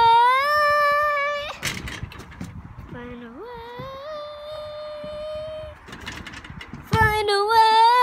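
A young girl singing a cappella in long held notes: a loud note that rises slightly and holds for about a second and a half, a softer held note in the middle, and another loud note starting near the end.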